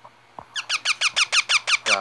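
Baby green parakeet giving a fast run of short, high squeaky calls, about eight a second, each dropping in pitch, starting about half a second in.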